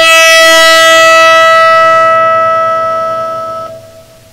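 Guitar string bowed with a cello bow, sounding one long sustained note rich in overtones that fades away near the end.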